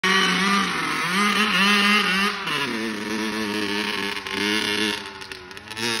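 Honda CR85R single-cylinder two-stroke dirt bike engine revving high, with a brief dip about a second in and a drop to a lower note about two and a half seconds in. The engine gets quieter near the end.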